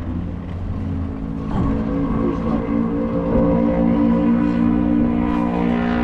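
A motor vehicle's engine running nearby with a steady hum, growing louder about a second and a half in.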